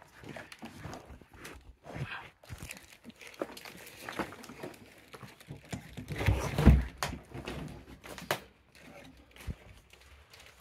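Footsteps crunching and crackling over rubble and debris on the floor of a small derelict room, with irregular small clicks and rustles. A brief low voice-like sound comes about six seconds in.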